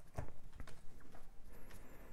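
Tarot cards being handled and laid down on a table: a few light, separate taps and clicks.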